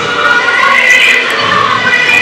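Music playing, with crowd noise beneath it.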